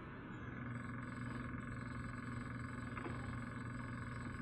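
A steady low hum with faint even hiss: background noise from an open microphone on a Zoom video call.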